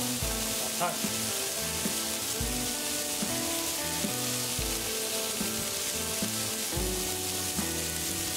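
Smashed ground-beef patties sizzling steadily on a hot cast iron griddle, with background music and a regular bass note underneath.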